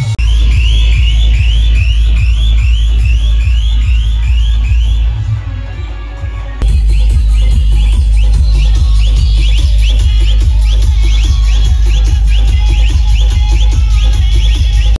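Loud electronic dance music with heavy bass played over a DJ sound system, a repeating rising synth figure over the beat. The bass eases off about five seconds in and comes back hard just before seven seconds with a steady pulsing beat.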